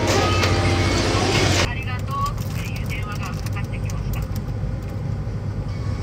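Busy shop sound with voices and steady chiming tones, which cuts off abruptly under two seconds in. A low, steady car-cabin rumble with brief snatches of speech follows.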